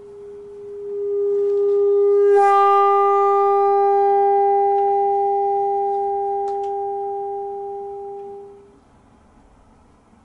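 Bassoon holding one long high note. It swells from a pale, almost pure tone, turns suddenly brighter and fuller a little over two seconds in, then slowly fades and stops near the end.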